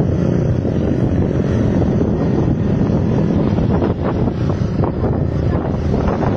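Loud, steady wind noise buffeting a phone's microphone, with the low rumble of a moving vehicle mixed in.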